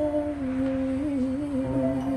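A singer humming one long held note as the song closes, the pitch wavering slightly about a second in.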